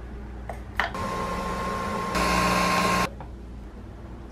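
Two clicks as a capsule goes into a Nespresso Vertuo coffee machine, then the machine running with a steady whirring hum that grows louder for about a second and cuts off suddenly.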